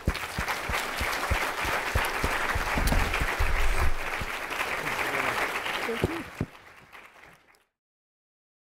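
Audience applauding in a lecture hall, the clapping dying down and fading out to silence about two-thirds of the way in.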